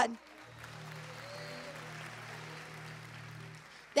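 Congregation applauding softly in praise, with a keyboard holding a low chord underneath that fades out just before the end.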